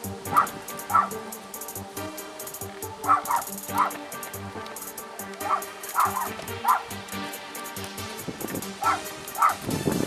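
A dog barking in short pairs, several times, over background music with a steady quick beat.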